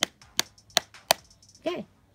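Pink stick jabbed down onto a MacBook's aluminium lid between spread fingers, knife-game style: four sharp taps, a little under three a second, then a voice says 'Okay'.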